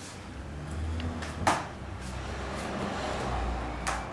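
Hands landing during explosive push-ups between two wooden plyo boxes: a few short slaps, the loudest about one and a half seconds in and another near the end, over a low rumble.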